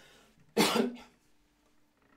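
A man coughs once, a single short burst about half a second in.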